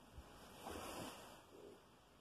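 Near silence: room tone with a faint light knock just after the start, then a soft rustle about half a second in, fading after about a second.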